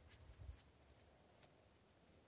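Near silence, with a faint low rumble in the first half-second and a few soft ticks.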